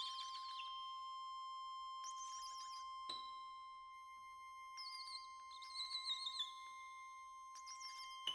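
Quiet free-improvised music for trumpet, accordion and piano: a steady high tone is held throughout, wavering high figures come and go about four times, and one sharp struck note rings out about three seconds in.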